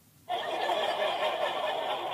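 Canned sitcom laugh track: recorded studio audience laughing, coming in about a third of a second in and holding steady.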